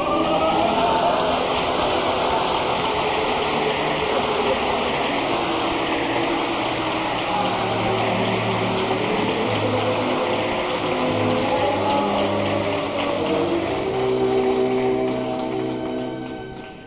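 Audience applauding over the orchestra's closing music of the aria, the clapping loud and steady before it dies away at the end.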